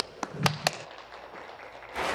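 Four sharp knocks or taps in quick succession within the first second, over quiet room sound in a large hall.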